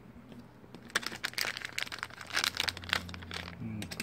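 A foil blind-bag pouch being torn open and crinkled by hand, a dense run of sharp crackles starting about a second in.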